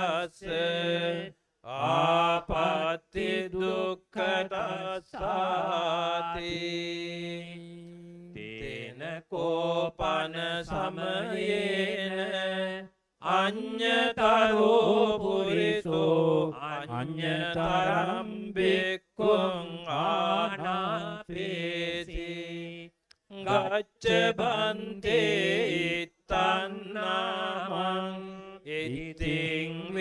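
A Buddhist monk chanting Pali scripture into a microphone in a near-monotone, phrase after phrase with brief pauses for breath. One syllable is held for about two seconds around six seconds in.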